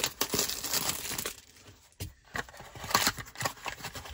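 Clear plastic shrink wrap crinkling and tearing as it is stripped off a cardboard trading card pack, in irregular crackly bursts with a brief lull about halfway, then more snaps as the pack is pulled open.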